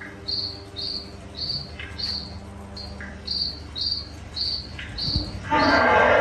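Steady cricket chirping, about two chirps a second. About five and a half seconds in, the animatronic bunyip's loud roar begins over it.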